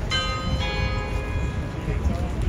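A bell chime: two ringing strikes about half a second apart, each with several clear overtones, fading over the next second and a half, over low outdoor crowd noise.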